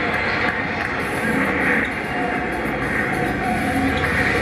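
Basketball broadcast audio played through a television speaker during a stoppage in play: a steady wash of arena noise, with faint music tones coming in about halfway through.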